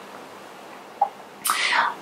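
A person's quick, sharp breath in just before speaking again, near the end, after about a second of quiet room tone and a brief faint blip.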